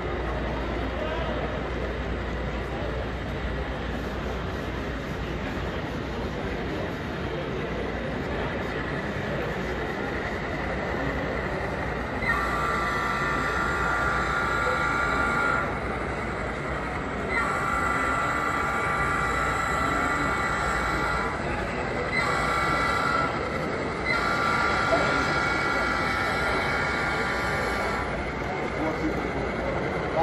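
HO-scale model diesel locomotive's sound-system horn blowing the grade-crossing signal, starting about twelve seconds in: two long blasts, a short one, then a long one. Underneath is a steady background of hall chatter.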